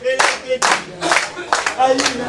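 A small crowd of men clapping together in a steady rhythm, about two claps a second, with voices chanting along.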